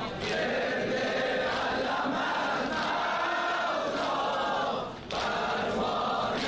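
A crowd of men chanting the refrain of a Shia noha (lamentation) together in unison, with a brief break about five seconds in.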